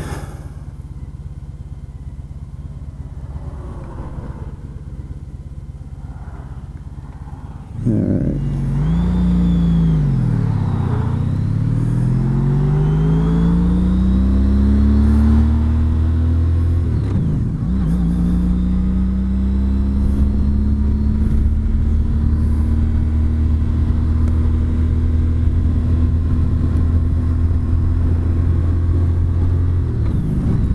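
Honda CTX1300's V4 engine running on the highway, with steady road and wind rumble. About eight seconds in it gets louder and the engine note drops and then climbs. It dips briefly again a few seconds later, then settles into a steady, slowly rising cruise note.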